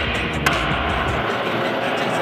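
Skateboard wheels rolling on a concrete floor, a steady noisy roll with a low rumble that drops away after about a second, and a single sharp click about half a second in.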